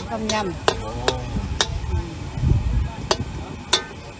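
Metal ladle-spatula stirring soup in a steel wok, knocking and scraping against the pan with about six sharp clanks spread through.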